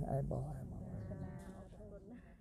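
A man's voice speaking, ending on a drawn-out final syllable, then fading steadily away.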